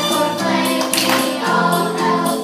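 A song with a group of voices singing over instrumental accompaniment, with a percussion hit about a second in.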